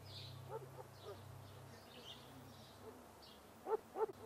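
Faint birds calling: scattered high chirps and short pitched calls, two of them louder near the end. A low hum fades out about two-thirds of the way in.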